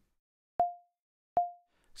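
Two short synthesized pings from a mi-gen~ mass-spring physical model oscillator in Max/MSP, a little under a second apart. Each is a sharp click at the start, then a single mid pitch that dies away quickly: the damped oscillator ringing after a force impulse.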